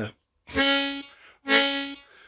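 Harmonica playing two held notes of the same pitch, each about half a second long, with the second note louder than the first.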